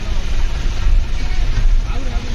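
Steady rumble of a moving vehicle, its road and engine noise heard from inside the cabin, with faint voices underneath.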